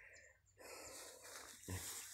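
Near silence with faint outdoor background hiss, broken by a brief vocal sound from the speaker near the end.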